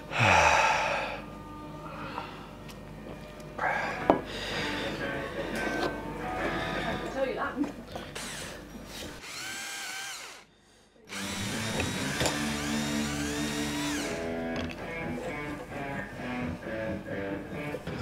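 Power drill running as tuner holes are bored in a wooden guitar headstock, with background music.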